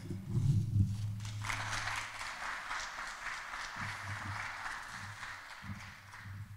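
Light applause from a small audience, starting about a second and a half in and going on steadily, with a few low footsteps on the stage.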